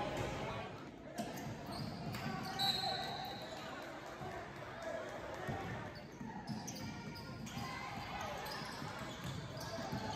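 Basketball bouncing on a hardwood gym floor during a game, among faint voices and crowd murmur echoing in the hall.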